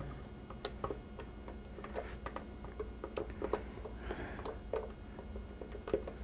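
Light scattered ticks and soft scraping of a spatula working thick puréed tomato sauce out of a blender jar into a pan.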